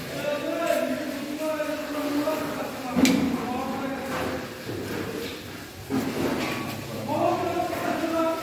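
People talking, with one sharp thump about three seconds in.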